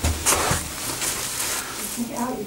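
Handheld-camera handling and movement noise: a dull low thump at the start and a few short knocks, then a steady rustle.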